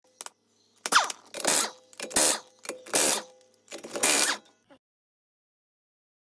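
Mechanical ratcheting clicks in about five short bursts, each under half a second and spaced under a second apart, with a faint steady hum beneath the first few.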